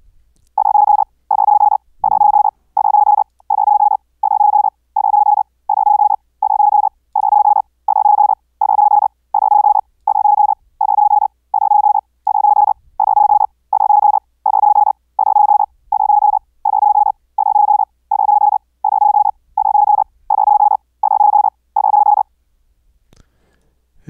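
Morse code (CW) sine tone of about 830 Hz sent at 130 words per minute. Each short burst of about 0.4 s is a whole word, repeating about one and a half times a second. Stretches with more edge noise (key clicks, with the bandpass filter bypassed) alternate with cleaner stretches where the bandpass filter narrows the tone.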